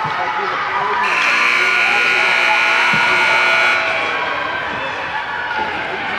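Rink scoreboard buzzer sounding one steady, loud note for nearly three seconds, starting about a second in, over spectators' voices, with a single knock near the middle.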